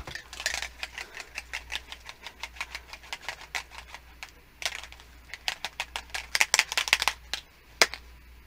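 Rapid clicking and rattling from a small spray-ink mist bottle being worked by hand to clear its clogged sprayer, several clicks a second, coming louder and thicker in the second half.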